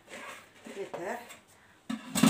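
A faint voice saying two short phrases, too softly to make out.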